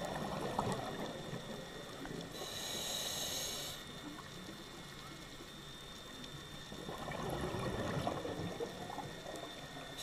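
Scuba diver breathing through a regulator underwater: a bubbling exhale, then a short high hiss of the inhale about two seconds in. After a pause, a second bubbling exhale comes about seven seconds in.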